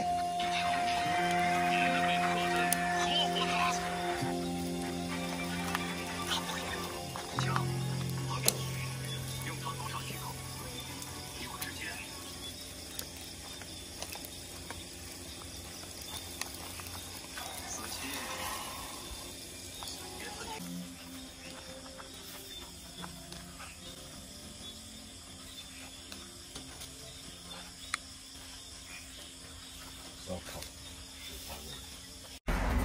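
Background music with long held notes, loudest over the first few seconds and dying away by about twelve seconds in. After that only a faint hiss with scattered small clicks remains, in keeping with a charcoal grill sizzling under skewers of fish and shrimp.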